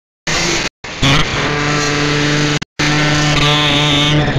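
A steady, droning pitched sound, chopped by abrupt cuts to dead silence three times: at the start, just before a second in, and about two and a half seconds in.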